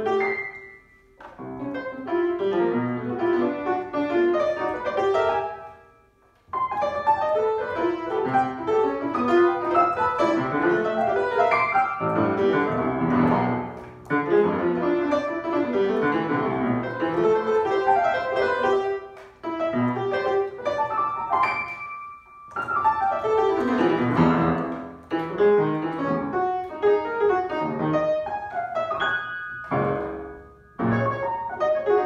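Black upright piano played solo in a free improvisation: dense, fast clusters of notes and chords across the keyboard, in phrases broken by short pauses, the longest about six seconds in.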